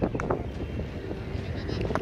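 Wind rumbling on the microphone, with faint voices of players in the background.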